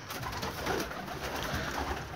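Domestic pigeons cooing inside a small loft.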